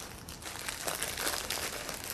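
Thin clear plastic bag crinkling and rustling in the hands as it is fitted around a bouquet's wrapped stem ends, in a run of irregular rustles.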